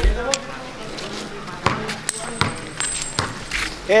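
A basketball bouncing on an outdoor court, three or four knocks a little under a second apart, among players' voices.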